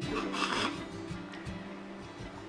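Soft background music with sustained notes, and a brief rasping noise about half a second in.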